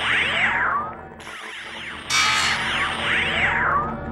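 A synthesized TV-show ident sting played over a logo animation: a held low chord with sweeping, swooping synth tones that rise and fall. The sweeps come in two passes, and the second starts louder about two seconds in.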